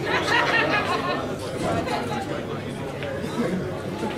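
Background chatter of many people talking at once in a large hall, with no words clear.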